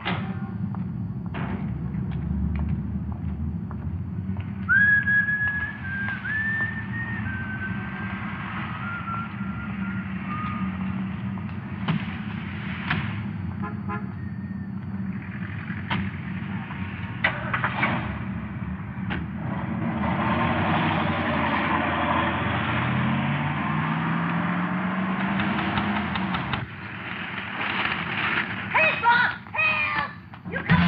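A car engine running steadily, with a few sharp knocks like car doors shutting. For several seconds someone whistles a tune that steps downward in pitch, and near the end the engine revs up as the car pulls away.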